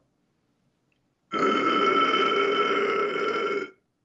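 A man's distorted low scream in the extreme-metal style: one held, rough growl of about two and a half seconds that starts and cuts off abruptly.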